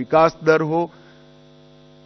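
A man speaking in Hindi, breaking off about a second in. Under the pause a faint, steady electrical mains hum remains, a stack of evenly spaced low tones.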